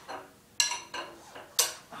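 Two metallic clanks about a second apart, each with a brief ring, from a long wrench on the crankshaft bolt as the engine is turned over slowly by hand.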